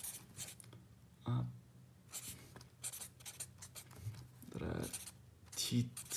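Pen writing on spiral-notebook paper: a run of short, scratchy strokes as a word is written out by hand.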